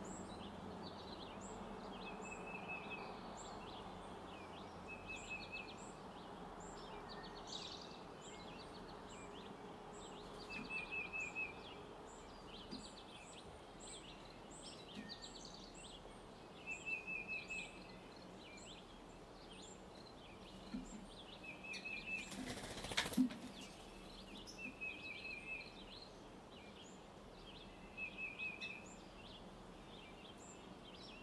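Wild birds calling in a pasture: a short rapid trill repeated every few seconds over many high, thin chirps, all fairly faint. A single sharp knock about 23 seconds in.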